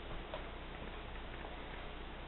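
Faint scratching of crayons being drawn across paper on a tabletop, with a few light clicks, over a steady background hiss.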